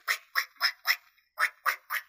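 A woman making snipping scissors noises with her mouth: short, clipped, hissy sounds about four a second, a run of four, a brief pause about halfway, then another run.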